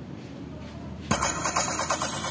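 Music starts suddenly about a second in from a portable box speaker driven by a TPA3118 class-D amplifier board, loud and dense with a quick run of percussive beats. Before it there is only a faint low background hum.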